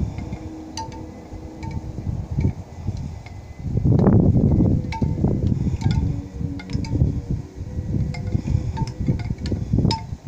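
Scattered light chime-like tinkles, a short pitched ping about every second, over low rumbling wind noise on the microphone that swells loudest about four seconds in.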